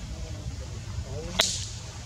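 A single sharp crack about one and a half seconds in, over a steady low rumble.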